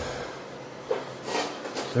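A few brief scuffs and handling noises as a heavy welded steel post is lifted off a concrete floor, ending with a man saying "there".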